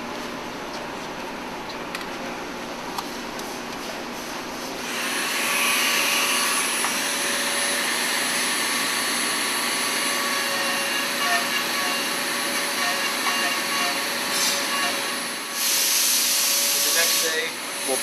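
A woodworking power tool motor running with a steady high whine. It starts about five seconds in over the steady hum of the shop, dips briefly near the end and comes back louder.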